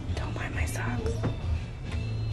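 Soft whispered speech over background music with a steady bass line.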